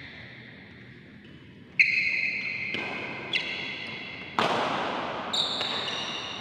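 Badminton rally: rackets striking the shuttlecock about five times, roughly once a second, each hit a sharp ringing crack that echoes and fades in the large hall.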